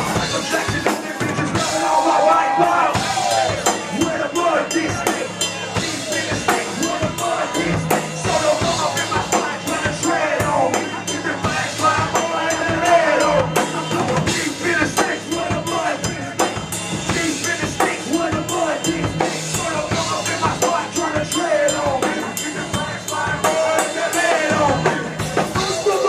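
Live amplified music: a rapper delivering vocals into a handheld microphone over a loud backing track with a heavy, steady drum beat.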